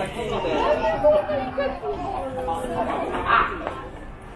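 Chatter of several people talking at once close by, with overlapping voices.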